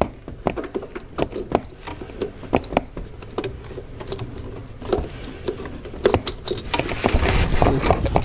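Hands groping around in a car's engine bay for a dropped bolt: scattered small clicks and knocks of metal and plastic parts, with rustling that grows louder near the end.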